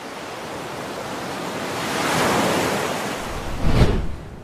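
Ocean surf sound effect: a wash of wave noise that swells to a peak about two seconds in and ebbs, then a low thump near the end.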